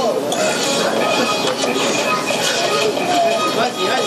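Several people's voices talking over one another, an overlapping hubbub with no single clear speaker.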